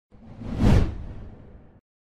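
An intro whoosh sound effect with a deep low boom, swelling to a peak under a second in and fading out before two seconds.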